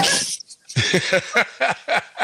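People laughing hard: a loud burst at the start, then from about a second in a quick run of 'ha-ha' pulses, about four a second.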